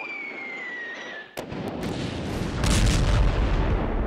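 The descending whistle of a falling aerial bomb, cut off by a sharp blast about a second and a half in, then heavy explosions with a deep rumble that grows loudest near the end.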